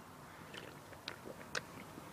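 Faint sips and small clicks of someone drinking from a drink can held to the mouth.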